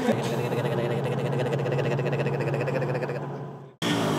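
A vehicle engine running steadily at an even pitch, with a fast, regular pulse. It fades away and the sound cuts off suddenly near the end.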